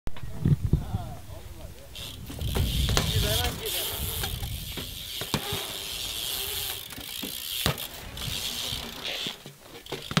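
A BMX bike riding on concrete ramps: tyres rolling, the rear hub's freewheel ticking and buzzing while coasting, and several sharp knocks from wheels landing or striking ramp edges.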